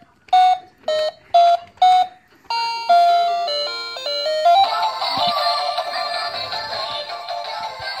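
Battery-powered toy phone: four short electronic beeps as its buttons are pressed, then an electronic melody that starts about two and a half seconds in and fills out into a fuller tune halfway through.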